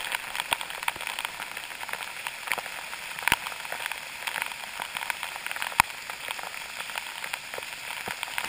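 Spray and drips from a cave waterfall falling onto the camera, heard as many sharp, irregular taps over a steady rush of falling water. Two taps, about a third of the way in and again about three quarters through, are much louder than the rest.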